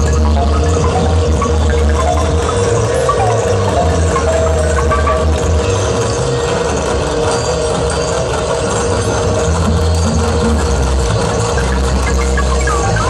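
Loud live experimental music from amplified electronics: a heavy bass drone under a steady held middle note, with a dense, hissing wash of noise on top.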